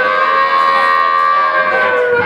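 A single pitched note held steady from the live band's stage sound, with no bass or drums under it, leading into the next song.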